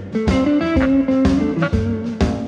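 Blues-rock band playing an instrumental stretch between sung lines: electric guitar over bass and a drum kit keeping a steady beat.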